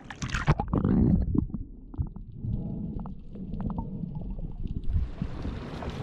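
Sea water splashing around a waterproof action camera at the surface, then a muffled low rumble with a few faint clicks as the camera dips under water; the sound clears again near the end.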